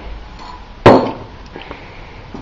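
A single sharp knock with a brief ringing tail, just under a second in, followed by a few faint ticks.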